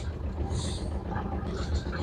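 Steady low hum of the sailboat's motor running, with a light haze of wind and water noise over it.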